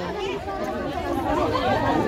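Background chatter of several people's voices mixed together, with no one voice standing out.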